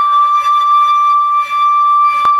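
Chinese bamboo flute (dizi) holding one long, steady note, with a brief dip in loudness about one and a half seconds in.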